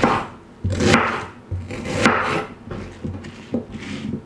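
Chef's knife slicing through a peeled onion on a wooden cutting board: slow cuts about a second apart, each a crisp crunch through the onion's layers onto the board.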